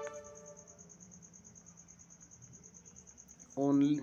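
A faint, steady, high-pitched tone pulsing rapidly and evenly, with no break, under a pause in speech. The tail of a word is heard at the start and a short spoken word near the end.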